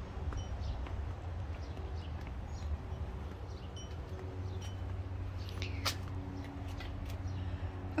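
Outdoor background: a steady low rumble with a faint steady hum, and a few short, faint high chirps scattered through, plus one brief tick near the end.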